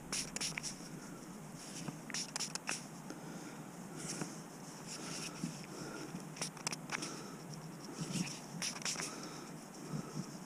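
Faint, scattered scratching and scraping as a thumb rubs soil off a freshly dug Roman coin held in the palm.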